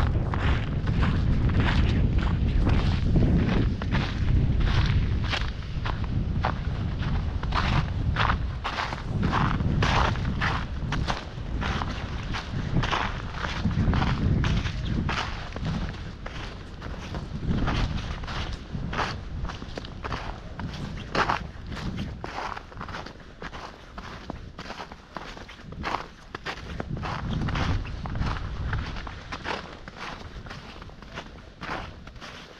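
Footsteps crunching in snow at a steady walking pace, about two steps a second. A low rumble runs under them, loudest in the first half.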